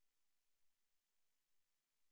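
Near silence: only a very faint steady hiss.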